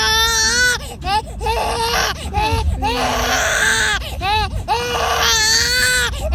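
Infant crying in repeated wails, with long drawn-out cries near the start and near the end and shorter, broken cries in between.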